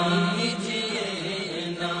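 Naat, Urdu devotional singing: a voice drawing out a held, slowly bending note over a steady low drone, growing slightly quieter toward the end.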